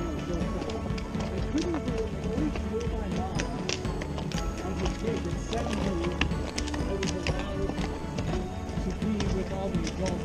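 Horses walking on a dirt trail, their hooves making irregular, soft clip-clops, under a rider's faint humming.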